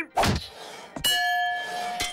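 Cartoon sound effects of a fairground strength tester: a thump as the wooden mallet hits the button, then about a second in a metallic clang as the puck strikes the bell, which rings on with a steady tone.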